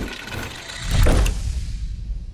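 Transition sound effect: a whoosh that swells into a deep boom hit about a second in, then dies away.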